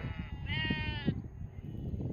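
A sheep bleats once, a single call of about half a second that comes about half a second in.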